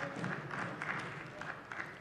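Brief scattered applause from members in a parliament chamber, fading away.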